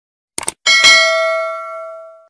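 Subscribe-animation sound effects: a quick mouse double-click, then a bright notification-bell ding struck twice in quick succession that rings on and fades away over about a second and a half.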